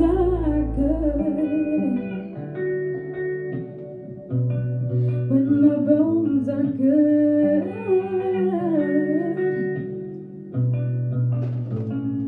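A woman singing a song into a microphone over backing music with held chords and a bass line that moves in steps.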